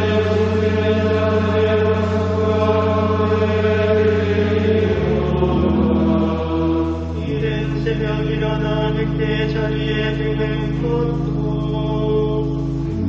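Gregorian chant sung by a choir of monks over sustained organ accompaniment. The organ's held bass notes change about five seconds in and again about two seconds later.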